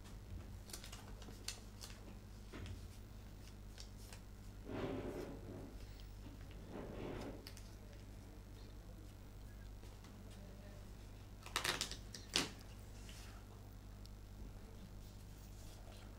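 Billiard balls striking each other on a carom table: a quick cluster of sharp clicks, then one more sharp click about half a second later, over a faint steady hum in a quiet hall. Two soft, short rustling noises come earlier.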